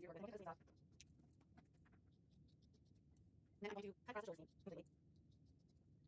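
Near silence, with faint scattered snips of scissors cutting through cotton T-shirt fabric and a brief faint voice a little past the middle.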